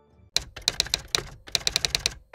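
Typing sound effect: a run of quick, irregular key clicks starting about a third of a second in, with a brief pause past the middle.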